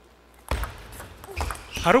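Table tennis ball struck on a serve and the return, a few sharp clicks of ball on paddle and table, starting suddenly about half a second in. A man's commentary begins near the end.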